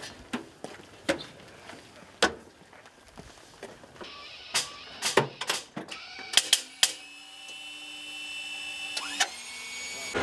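Sharp clicks and knocks of harness buckles and cockpit fittings as a pilot is strapped into a jet's ejection seat. About seven seconds in, a steady electrical whine with several held tones starts.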